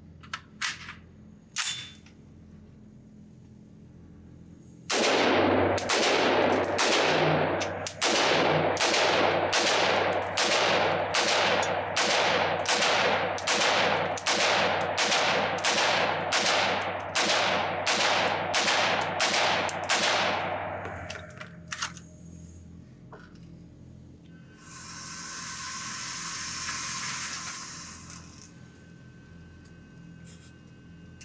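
Takedown AR-15 pistol in 300 Blackout fired in a steady string of about two dozen shots, roughly one every two-thirds of a second for about 15 seconds, echoing in an indoor range and cycling without a stoppage. A few light clicks come before the first shot, and a few seconds after the last one a target carrier motor whirs for about three seconds.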